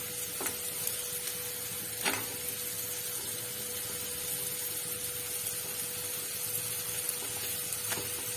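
Faint steady sizzle of food frying in a pan, under a constant hum, with a light tap about two seconds in as chapatis are handled in a steel bowl.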